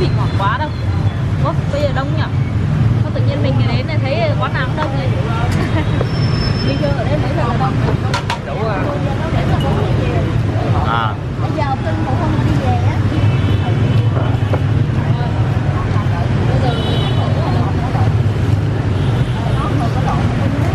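Steady street-traffic rumble, with people talking in the background.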